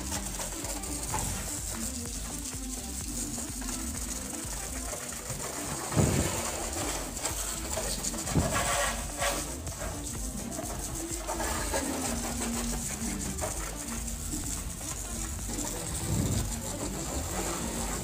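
Water from a garden hose spraying over a motorcycle to rinse off soap, a steady hiss that swells louder a few times.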